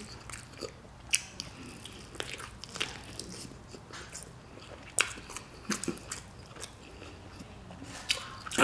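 Close-up mouth sounds of eating chicken on the bone: biting and chewing tender meat, with scattered sharp clicks and smacks.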